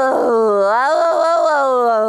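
A dog howling: one long, loud howl that wavers in pitch in the middle and slides gradually lower.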